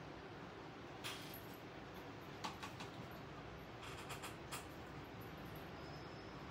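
Quiet room tone with a few faint, short clicks and taps from brush painting work at the table: one about a second in, a small cluster around two and a half seconds, and another around four seconds.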